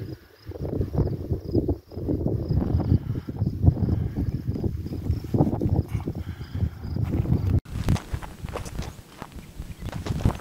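Wind buffeting the camera microphone in uneven low gusts. A faint, high, pulsing chirp runs through the first part. An abrupt cut about three-quarters of the way through changes the sound.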